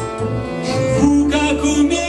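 A live acoustic band plays an instrumental passage: a cello bows sustained notes over acoustic guitars and double bass.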